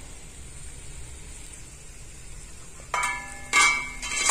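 Chicken cooking in a frying pan with a faint low sizzle, then, about three seconds in, two sharp metallic clinks of kitchenware that ring briefly.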